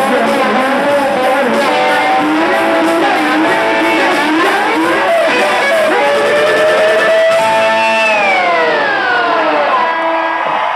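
Live rock band playing, led by an electric lap steel guitar playing sliding phrases, with a long slide down in pitch near the end.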